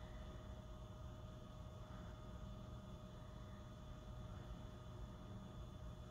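Quiet room tone: a faint steady hum with a thin steady tone, and no distinct events.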